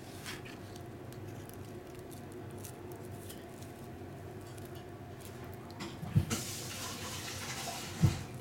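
Kittens playing with a wand toy's foil tinsel streamers on a wooden floor: scattered light taps and ticks, a sharp thump about six seconds in, then a couple of seconds of high rustling.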